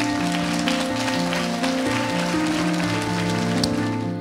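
Background music with slow held notes, over a crowd applauding that stops near the end.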